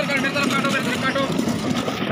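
Several people's voices talking over one another, steady throughout, with no single clear speaker.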